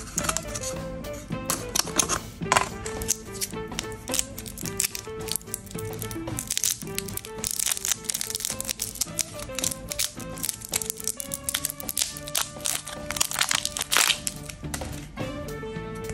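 Background music over the crinkling of a lollipop's wrapper being picked at and peeled off by hand, in many short, irregular crackles.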